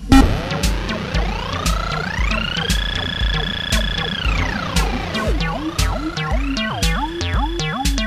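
Acid techno: a Roland TB-303-style bass synth line whose resonant filter sweeps slowly up, holds high for a second or so, sweeps back down, then wobbles quickly open and shut on each note. Under it a steady kick drum beats about twice a second, with hi-hat ticks.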